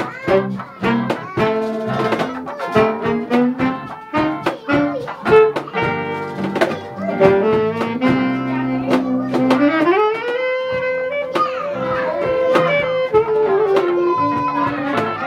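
Acoustic guitars strumming a jazzy chord rhythm with a saxophone playing the melody; in the second half a long held note slides up about an octave and is sustained.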